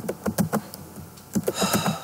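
Computer keyboard keys being typed: a few separate clicks at the start and a quick cluster near the end.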